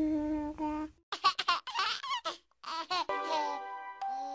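Background music of held tones, broken in the middle by about two seconds of high, quickly gliding squeals like a baby's babbling, with a short gap partway through.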